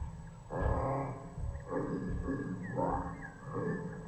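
A bear growling and grunting from a slowed-down film soundtrack, a series of about four rough calls, played through computer speakers.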